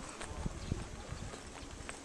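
Footsteps and camera-handling knocks from someone walking over uneven ground with a handheld camera: irregular low thuds with a few short sharp ticks.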